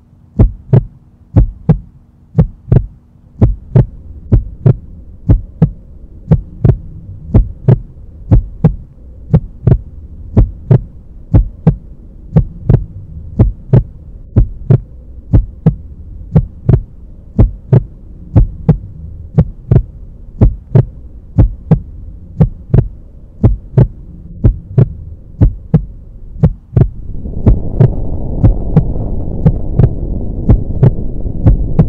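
Heartbeat sound effect: regular thumps about twice a second over a low, steady drone. Near the end a louder, deep rumble swells in beneath the beats.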